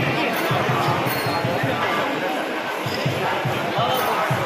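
Drums beating in a quick, uneven run of low strokes, with voices over them.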